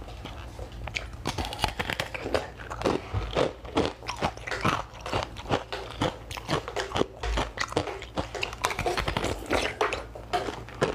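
Close-miked bites and crunches into a frozen block of basil seed ice, with chewing of the ice: many sharp crunches in quick succession.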